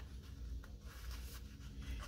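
Faint rustling and scraping of fingers handling a paper sticker sheet and peeling off a planner sticker, over a low steady hum.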